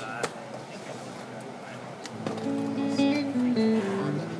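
Guitar playing single held notes in a slow descending line that begins about halfway in, after a sharp click.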